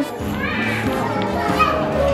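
Battery-powered musical nutcracker snow globe toy playing its tune, set off by pressing the try-me button on its box.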